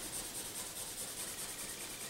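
Felt-tip highlighter scribbling back and forth on a paper printout: a faint rubbing.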